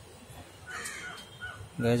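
A crow cawing once, about a second in, outside.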